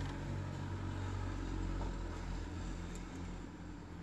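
Steady low background hum that fades slowly, with no distinct handling clicks or knocks.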